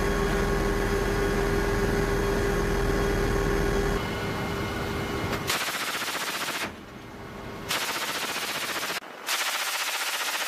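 Steady drone of a military aircraft's engines and rotors heard inside the cabin for about five seconds. Then a mounted heavy machine gun fires from the aircraft in three bursts of rapid fire, with short pauses between them.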